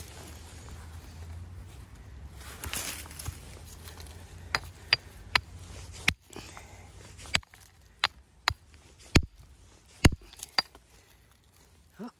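Rock hammer striking a stone to crack it open: about nine sharp knocks at uneven intervals in the second half, the loudest two near the end. Before them, scuffing and rustling on gravel and dry leaves.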